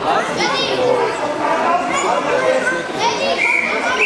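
Children's voices and chatter filling a large sports hall, with a short, steady whistle blast near the end: a referee's whistle starting a youth wrestling bout.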